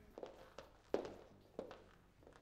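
A few faint footsteps on a wooden floor, three steps about two-thirds of a second apart.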